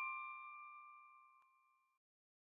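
The ringing tail of a bell-like chime from a short logo jingle, its notes fading steadily and dying away over the first second and a half.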